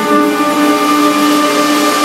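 Jazz orchestra with brass and strings holding a sustained chord at full volume.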